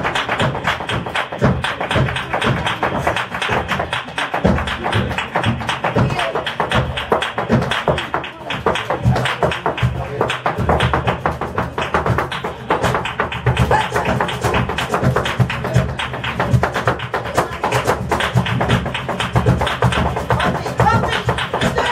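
Live flamenco with a dancer's rapid footwork striking the floor: dense, fast percussive taps that run on without a break.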